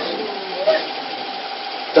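A steady machine-like hum, with a faint voice rising briefly just under a second in.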